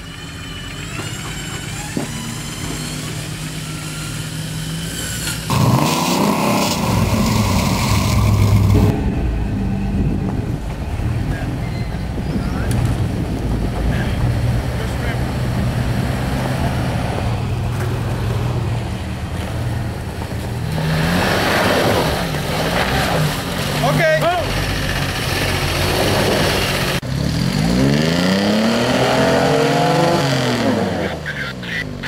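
Off-road Jeep engines running and pulling on a snowy trail climb, the sound changing abruptly several times. Near the end an engine revs up and back down.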